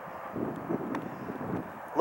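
Steady outdoor background noise, a low even hiss, with a few soft knocks around a second in.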